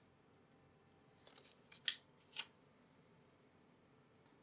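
A few short, light clicks and scrapes from small steel tool parts being handled and fitted together by hand. The two sharpest come about half a second apart, midway through.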